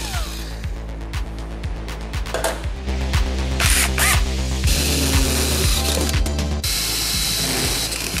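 Background music with a steady beat over a cordless drill boring into a truck's sheet-metal firewall, the drill running in several stretches that start and stop.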